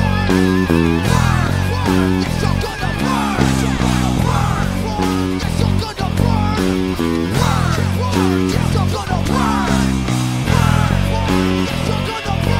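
An Edwards E-J-90MF electric bass playing a driving rock riff along with a full-band backing track. The backing has electric guitar lines that waver and bend in pitch over steady drum hits, and there is no singing.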